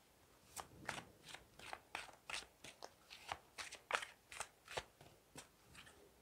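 A deck of tarot cards being shuffled by hand: faint, irregular soft clicks and flicks of card against card, several a second.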